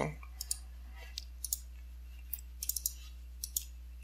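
Computer mouse buttons clicking about ten times at an irregular pace, some clicks in quick pairs, over a steady low electrical hum.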